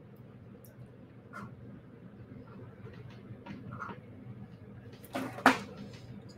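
Quiet handling noise: a few faint small ticks and rustles as fine beading wire and a crimp tube are handled, with a short louder rustle about five seconds in.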